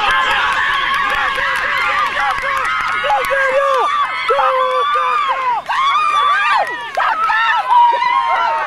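Sideline crowd yelling and screaming encouragement, many high voices overlapping and loud throughout, with a brief lull a little past halfway.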